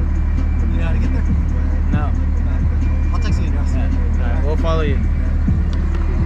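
A vehicle engine idling, heard from inside the cab as a steady low rumble, with music playing over it and brief voices near the end.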